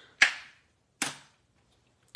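Two sharp plastic clacks about a second apart, each with a short fading tail: a clear plastic stamp-set case knocking against the desk as it is handled.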